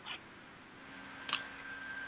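A quiet pause in a conversation: faint background hiss and a faint steady hum, with one small click about a second and a half in.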